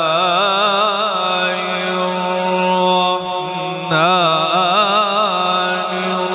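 A man reciting the Quran in the melodic tajweed style, drawing out long, ornamented notes with a wavering pitch. The voice softens a little after three seconds and takes up a new phrase about a second later.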